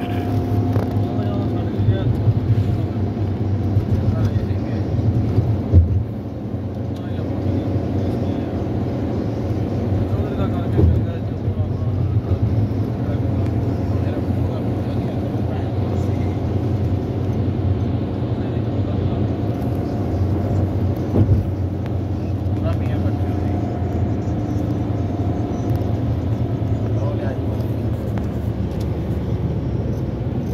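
Steady low road and engine rumble of a car driving at speed, heard from inside the cabin, with a few short louder knocks.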